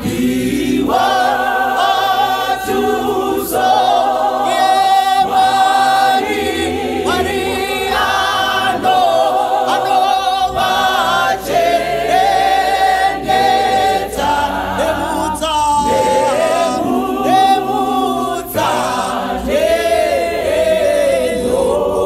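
Mixed men's and women's choir singing a hymn in Shona a cappella, in several-part harmony with sustained phrases.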